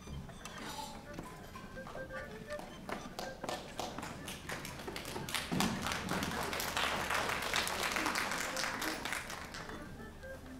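Audience applause: scattered claps at first, growing fuller in the second half and then easing off near the end.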